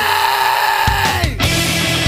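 Loud heavy rock band music with distorted guitars. A held note slides slowly down while the low end drops away, then after a sudden brief break about a second and a half in, the full band comes back in.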